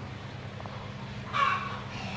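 A chicken calling once, a single short call about a second and a half in.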